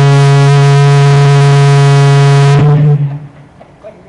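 Loud, steady howl of microphone feedback through the meeting room's public-address system: one low, unwavering tone with a stack of overtones that cuts off abruptly about three seconds in.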